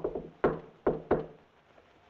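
Knocking on a door: a run of sharp knocks, with one just at the start, one about half a second in, then two close together near the one-second mark, before they stop.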